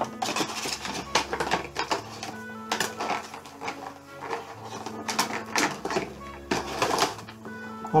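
Clear plastic packaging being handled around a vinyl bobblehead figure, crinkling and clicking in quick irregular crackles throughout.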